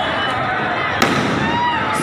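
Firecrackers going off among a crowd of voices, with one sharp bang about a second in.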